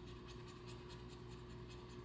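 Scratching the silver coating off a paper scratch-off card: faint, rapid short scrapes, about six a second.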